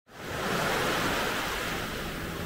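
Small waves washing up on a sandy beach: a steady rush of surf that fades in from silence at the start.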